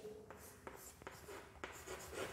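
Chalk writing on a blackboard: faint scratches and a few light taps as the letters of a word are drawn.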